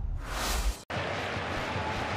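The end of a logo sting: a whoosh over deep bass that cuts off abruptly just under a second in. After it comes the steady murmur of a football stadium crowd.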